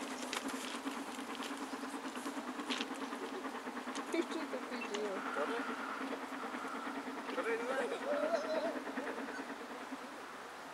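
Faint voices of people talking at a distance, over a steady low hum.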